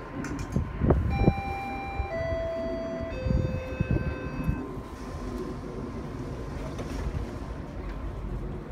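Three-note descending electronic chime from a GO Transit bilevel coach, each note held about a second and stepping lower, the warning that the doors are about to close. It plays over the low rumble of the train standing at the platform.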